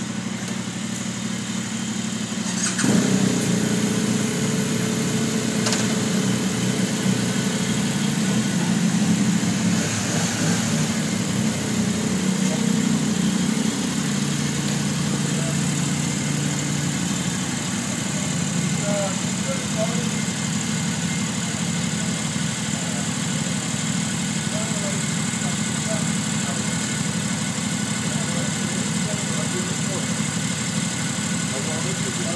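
A motorcycle engine starting about three seconds in, then idling steadily.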